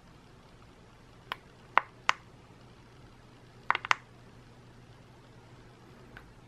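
Fingers tapping and handling a smartphone close to the microphone: a few sharp, short clicks, one just over a second in, two around two seconds, and a quick cluster of three near four seconds. Between them is quiet room tone with a faint low hum.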